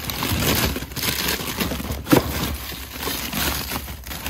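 Plastic packaging of frozen food crinkling and rustling as packages are shuffled around inside a chest freezer, with one sharp knock about two seconds in.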